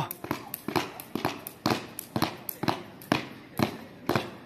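A child skipping with a jump rope on concrete: the rope slaps the ground and the shoes land in a quick, somewhat irregular run of sharp clicks, several a second, over about seven jumps.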